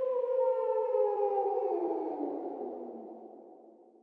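A lone electronic tone left after the beat stops, holding briefly and then slowly sliding down in pitch as it fades away to nothing near the end.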